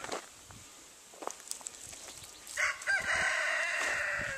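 A rooster crowing: a short rising start a little over halfway in, then one long drawn-out note.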